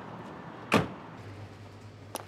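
A car door shuts with a single heavy thud, followed by a steady low hum of refrigerated drinks coolers.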